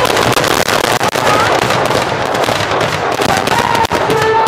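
Fireworks going off in a dense run of crackles and pops, many small reports packed closely together over a continuous din.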